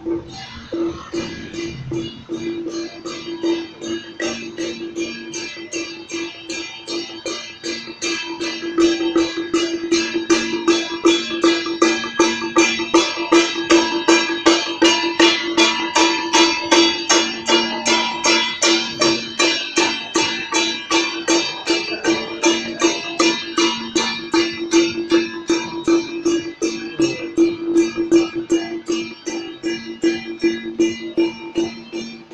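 Temple procession music: percussion beating a fast, even rhythm of about two to three strokes a second over one steady held tone. It grows markedly louder about eight seconds in as the procession passes close.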